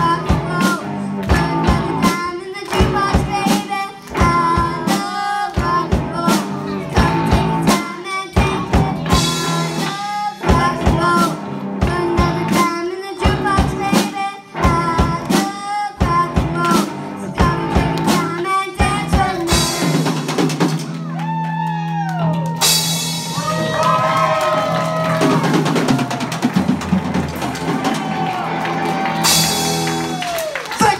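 Live rock band playing: drum kit, electric bass and electric guitar, with a young girl singing into a microphone. About twenty seconds in the drum beat stops and the band holds long notes while the singing carries on.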